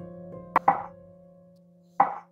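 A kitchen knife slicing a peeled raw potato into rounds on a wooden cutting board: two quick knife strikes on the board about half a second in, and another at the end.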